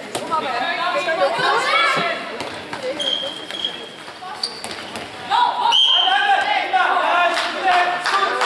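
A handball bouncing on a sports-hall floor amid players' voices calling, in a reverberant hall, with two short high whistle blasts: one about three seconds in and a louder one near six seconds.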